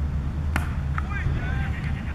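Cricket bat striking the ball with one sharp crack about half a second in, played for a single, followed by a smaller click and brief voices as the batsmen set off, over a steady low hum.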